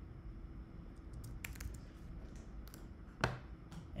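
Computer keyboard being typed on: a few scattered keystrokes, the loudest about three seconds in.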